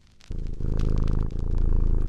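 Cat purring: a rapid low pulsing that starts about a third of a second in and dips briefly near the middle.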